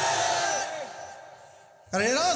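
A man's voice through a public-address system, the end of a drawn-out phrase with gliding pitch that trails away over the first second. It is followed by a short quiet pause, and his voice comes back abruptly just before the end.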